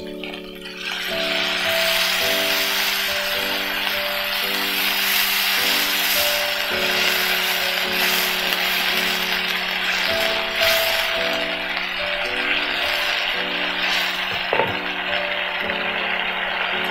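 Background music with held notes, over a steady sizzling hiss that starts about a second in: ground chili paste frying in hot oil in a wok just after a little water is added, stirred with a spatula, with a couple of light knocks near the end.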